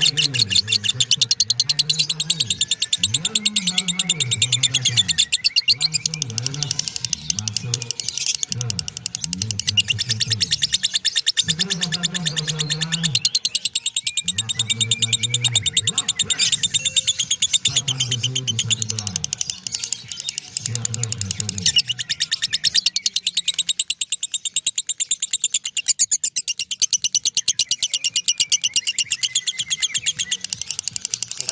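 Lovebird 'ngekek': one long, unbroken chattering trill of very rapid, high ticking notes. This sustained ngekek is the call that Indonesian lovebird keepers breed and train for. A low voice or music is mixed underneath for the first two-thirds.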